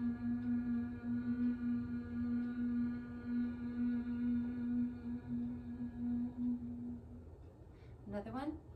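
A long, steady closed-lip human hum held at one pitch on the out-breath, as done in bumblebee breath (bhramari) yoga breathing. It stops about seven seconds in.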